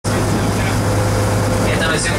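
Tour boat's engine running steadily with a constant low hum, over wind and water noise. A voice starts near the end.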